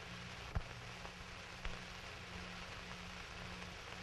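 Faint steady hiss and low hum of an old 16mm film soundtrack, with two short clicks, about half a second and a second and a half in.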